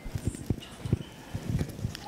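Microphone handling noise: a run of soft, irregular low thumps and knocks as the microphone is picked up and adjusted for a mic check.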